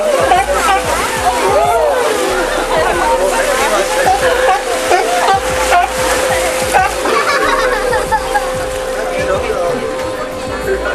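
Water splashing and sloshing as sea lions swim through a tour boat's wake, under many passengers' voices exclaiming and a steady hum.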